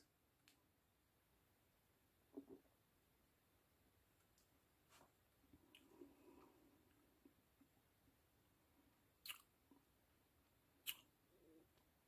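Near silence with a few faint mouth sounds of beer being sipped and tasted: soft smacks of the lips and tongue, with two sharper little clicks near the end.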